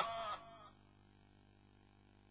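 The last held note of a man's chanted Qur'an recitation trailing off and dying away within the first half second, followed by near silence.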